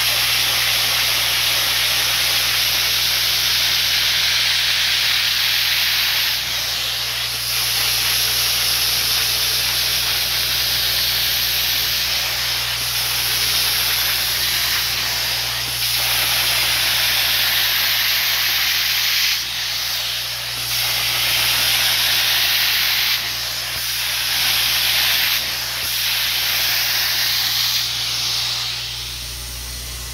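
Upholstery extraction tool drawn across a fabric sofa cushion: a steady hiss of spray and suction over a low, steady hum, dipping briefly several times and fading near the end.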